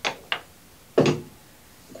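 Two sharp taps as a heavy 50-ounce beer glass is set down on a wooden bar top, then a duller, louder knock about a second in.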